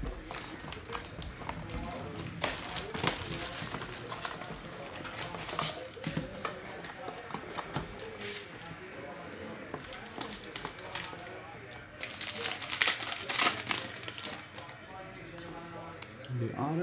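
A sealed trading-card box being opened by hand: its wrapping crinkling and cardboard rustling in short bursts, with a louder run of crinkling about twelve seconds in.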